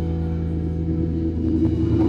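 Live grunge band's electric guitar and bass guitar holding a sustained, ringing chord with no drums, the playing growing busier near the end.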